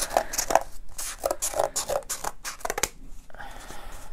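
Scissors cutting corrugated cardboard, with the cardboard rustling against plastic sheeting: a run of irregular snips and crackles, then a short scraping cut near the end.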